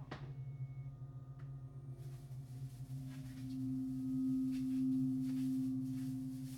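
Layered electronic drone of steady, pure sine-like tones: a low hum with a slight pulsing, and a higher tone that swells to its loudest about four to five seconds in and then eases off. A faint hiss comes in about two seconds in, with a few soft clicks.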